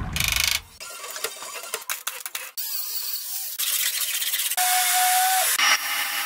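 Short bursts of body-shop work sounds cut one after another: hissing, sharp clicks and rattles, and a steady whine about two-thirds of the way through. Each burst cuts off suddenly.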